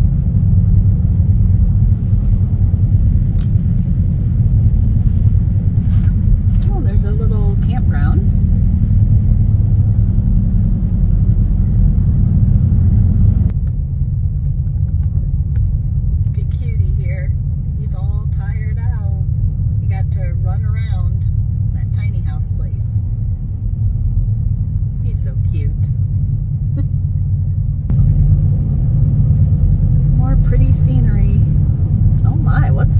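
Steady low rumble of road and engine noise inside a moving car's cabin. It drops abruptly a little under halfway through and comes back louder near the end.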